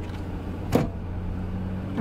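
Car running, heard from inside the cabin as a steady low hum, with a single sharp click about three quarters of a second in.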